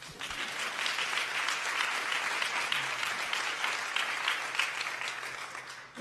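Audience applauding: many hands clapping together, starting at once and dying away near the end.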